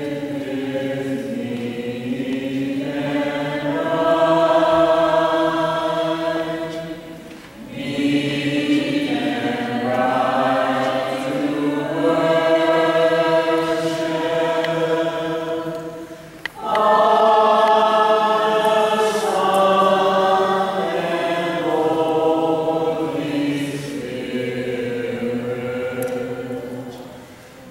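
A group of voices singing an Eastern Orthodox liturgical chant in unison. The long held phrases break for a moment twice, about a third and two thirds of the way through.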